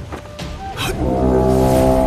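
A deep, sustained horn blast, a sound effect for a golden magic horn, swelling up about three quarters of a second in and then held loud, over dramatic background music.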